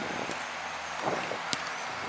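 Outdoor ambience at a football pitch: a steady background hiss with a couple of faint short knocks.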